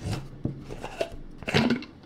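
Screw-on plastic lid of a Polar Gear water bottle being twisted off by hand, giving a few short clicks.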